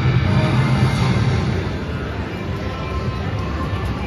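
Sky Rider slot machine's bonus music and win jingles playing steadily as the free-games bonus ends and its win is added to the credit meter, over a continuous background din.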